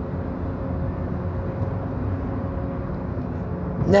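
Steady low rumble of a car heard from inside the cabin, with a faint hum running through it.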